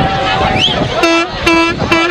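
Crowd chatter, then from about halfway a horn blown in short repeated blasts on a single steady pitch, a couple of blasts a second.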